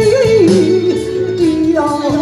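Taiwanese opera (gezaixi) singing into a handheld microphone over instrumental accompaniment. The voice holds wavering notes that step down in pitch, and a new phrase begins near the end.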